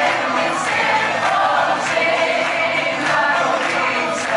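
A mixed group of young people singing a Christmas carol together, with hand clapping along.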